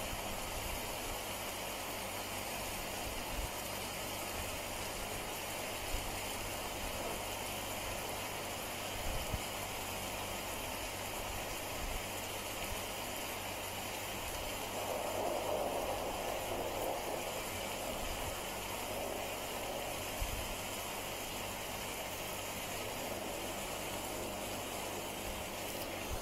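Steady low hiss of room tone, with a few faint soft taps spaced seconds apart as a fine-tipped pen dots ink onto a paper tile.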